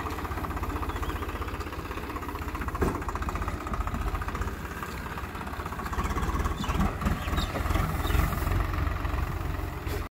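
Swaraj 744 FE tractor's three-cylinder diesel engine running steadily as the tractor drives, with one sharp knock about three seconds in.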